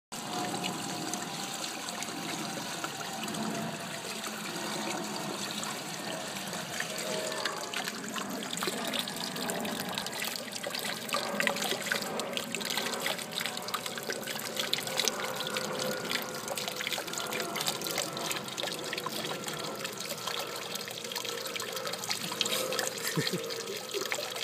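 Pool waterfall spilling a sheet of water from a tiled ledge into the pool, a steady splashing.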